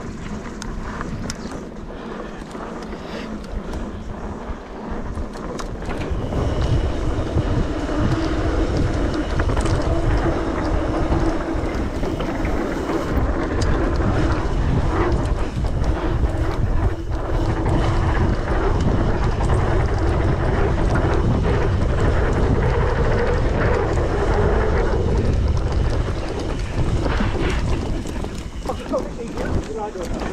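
Wind buffeting the handlebar camera's microphone, together with knobby tyres rolling and skidding over a dirt trail and the rattle of a full-suspension mountain bike descending. The noise grows much louder about six seconds in as speed builds on the downhill.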